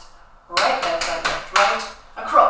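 Hands slapping the thighs through denim jeans in a body-percussion pattern, alternating right and left, a few slaps about half a second apart.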